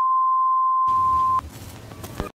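A steady, loud electronic test-tone beep, the kind played with television colour bars, held for about a second and a half and cut off with a click. A quieter static hiss starts just before the tone stops and carries on after it.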